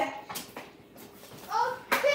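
Children's voices: a boy finishes saying "my bad", then after a quieter second another short vocal sound, and a sharp click near the end.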